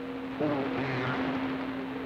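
CB radio receiver on channel 6 (27.025 MHz) between transmissions: steady static hiss with a constant heterodyne tone through it, and faint warbling signals coming up out of the noise about half a second in.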